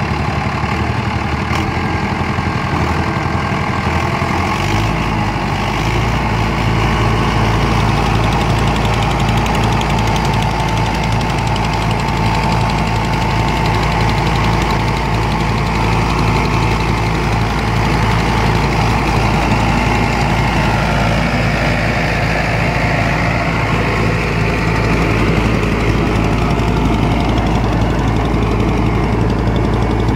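Mahindra Arjun 555 DI tractor's diesel engine running under load while driving an 8-foot Fieldking rotavator, its blades churning the soil. The engine note steps up about four to five seconds in and then holds steady.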